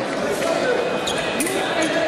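Fencers' footwork on the piste: shoes thumping and squeaking as they step, with a few sharp clicks, over the general noise of the hall.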